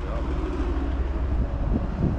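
The 1985 BMW's engine idling: a low, steady hum.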